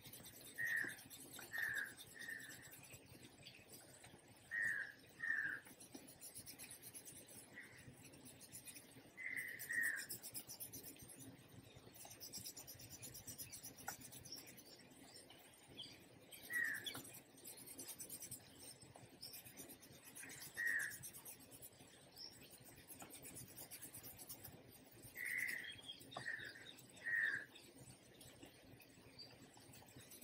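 A bird calling in short notes, singly or in runs of two or three, every few seconds, with a faint rubbing of pencil shading on paper beneath.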